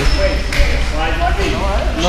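People talking in an echoing gym over a low steady hum, with one sharp knock about half a second in.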